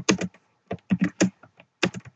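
Typing on a computer keyboard: irregular key clicks in short quick runs.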